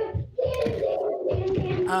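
Speech: a person talking in conversation, drawing out a long, level "um" near the end.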